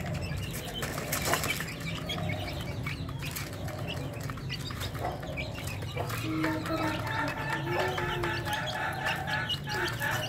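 Young Aseel-desi mix chickens peeping and clucking, with many short high chirps, and wings flapping and scuffling in sharp bursts.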